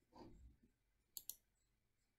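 Two quick computer mouse clicks close together, about a second in, against near silence, with a faint short soft sound just after the start.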